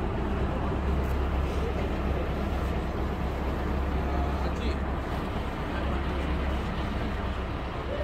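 A motor boat's engine running steadily under way, a constant low rumble mixed with rushing wind and water noise.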